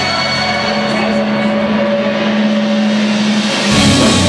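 A live metalcore band plays a held, droning chord from its amplified instruments. Just before the end, the full band comes in with drums and heavy guitars, and it gets louder.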